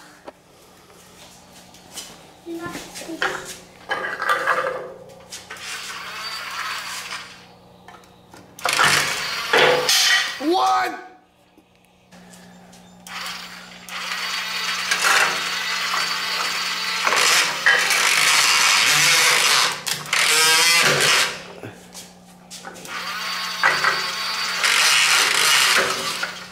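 Kobalt toy circular saw playing its recorded power-saw sound through its small speaker, in several bursts that start and stop as the trigger is held and let go. The longest burst lasts about seven seconds.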